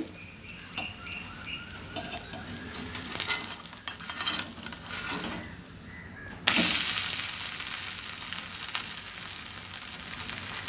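A wheat adai frying in oil on a hot tawa: a low sizzle with a few light clicks and scrapes of a steel spatula, then about six and a half seconds in it is flipped and the sizzle jumps sharply louder as the uncooked side hits the hot pan, slowly easing off after.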